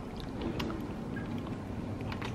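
Faint mouth clicks as a person tastes a pinch of edible glitter, over a steady low background rumble.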